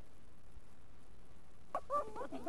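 Steady faint hiss, then near the end a short high-pitched vocal yelp from a person.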